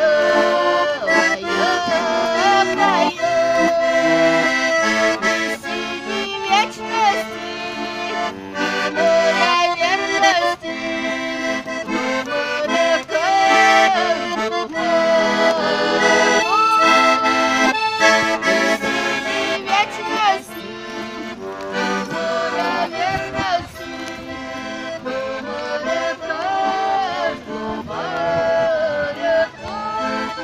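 Garmon (Russian button accordion) playing a lively traditional folk tune, melody over sustained chords, without a break.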